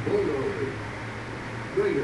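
A man's short, faint hesitation murmurs ('uh', 'mm') in a pause between phrases: one near the start and one just before the end, over a steady low hum.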